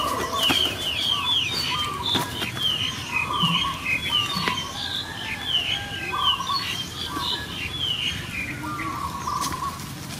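Birds chirping steadily, short high sweeping notes about two or three a second, with lower trilled notes now and then.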